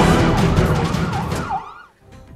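Siren sound effect, a rising and falling wail repeating about twice a second, mixed with music and drum hits. The whole thing fades out near the end.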